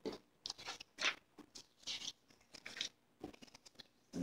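Paper and packaging being handled: a Lego instruction booklet and printed packaging rustling and crinkling in several short, irregular bursts.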